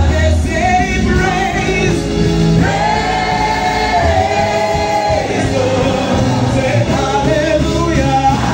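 Gospel praise singing by a group of singers with amplified music accompaniment and steady bass notes, with a long held sung note about three seconds in.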